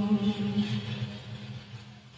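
Tân cổ karaoke backing music: a low held note with its overtones dying away, fading to faint by the end.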